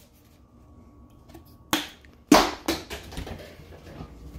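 A few sharp knocks and clunks of household objects being handled at a kitchen counter and refrigerator, three close together from about halfway in, the middle one loudest, with rustling handling noise after.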